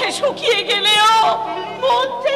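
A high voice wailing with wavering, breaking pitch, loudest and held about a second in, over background stage music with a steady low drone.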